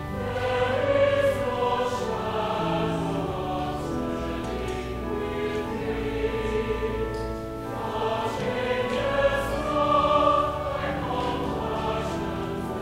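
Slow sacred choral music: a choir singing held chords over sustained low bass notes, the chords changing every second or so.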